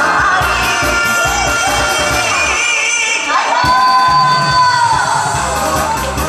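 A woman singing through a PA microphone over a loud backing track with a steady bass beat, holding one long note in the second half.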